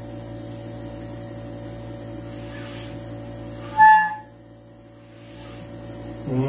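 A single short, high clarinet note about four seconds in, over a steady background hum.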